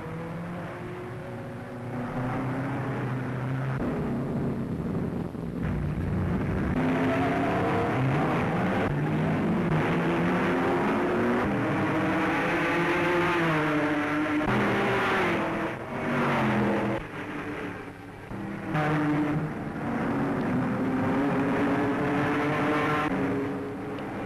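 1930s Grand Prix racing car engines running at high revs, their pitch rising and falling as the cars come past, with a few short dips in loudness between passes.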